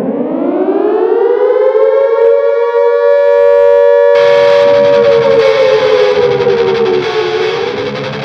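Air-raid siren winding up to a steady wail, its pitch sagging a little near the end. Distorted heavy-metal guitar music comes in under it about four seconds in.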